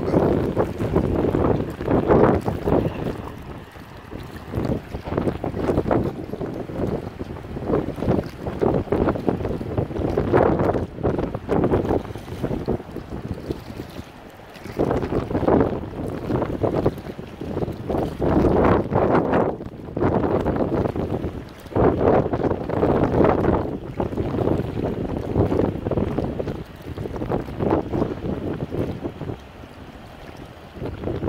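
Wind buffeting the microphone in gusts that swell and fall every few seconds, over small waves on choppy open water.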